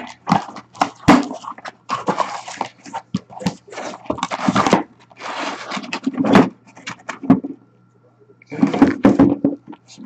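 A sealed cardboard case being opened by hand: tape and flaps pulled with short ripping, scraping rasps, and card boxes knocking against the cardboard and the counter as they are lifted out and stacked. The sounds come as a string of sharp knocks broken by rasps, with a brief lull a little past the middle.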